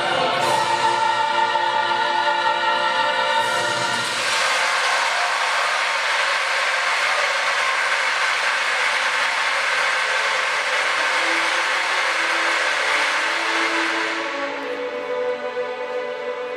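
Choral opera music for about four seconds gives way to a dense, steady rushing noise that lasts about ten seconds. Softer music comes back near the end.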